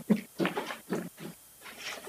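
A woman laughing softly and murmuring into a lectern microphone in short pulses, with a brief pause before she speaks.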